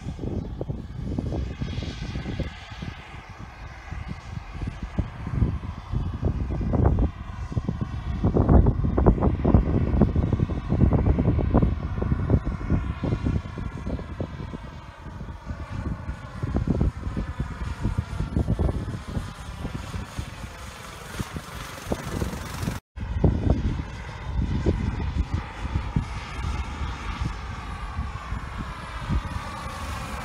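Bell 206 JetRanger helicopter flying past, its turbine and two-blade rotor making a continuous rumble that surges unevenly and takes on a slowly sweeping, phasing tone as it comes closer. The sound cuts out for an instant about two-thirds of the way through.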